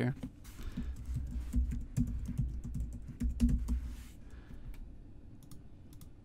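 Computer keyboard typing: a quick run of keystrokes for about four seconds, thinning to a few scattered clicks near the end.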